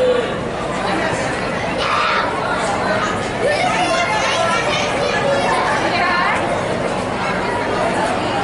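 Indistinct chatter of several spectators talking at once, with a steady murmur of crowd noise.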